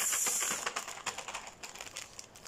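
Plastic instant-noodle packet crinkling as it is picked up and handled: a run of quick light crackles that thin out and fade over about two seconds.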